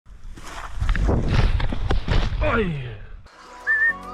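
Crackling and scuffing in dry leaves and brush over a low wind rumble, with a drawn-out falling voiced cry about two and a half seconds in. After an abrupt cut comes a short, high whistle-like tone near the end.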